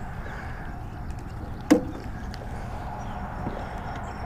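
Low, steady outdoor background noise with one sharp knock about two seconds in.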